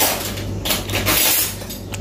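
A metal spoon clinking and scraping on a ceramic plate: a sharp click at the start, then a brief scrape about half a second in, over a low steady hum.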